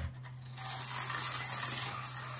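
Micro slot cars running on the track: a steady high whirring rush of tiny electric motors and tyres in the slot, starting about half a second in.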